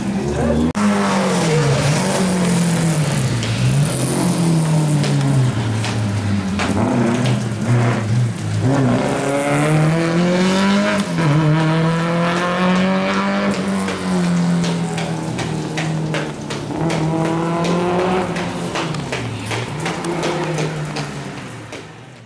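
A rally car's engine revving hard, its pitch repeatedly climbing under acceleration and dropping with each gear change and lift off the throttle. The sound fades out near the end.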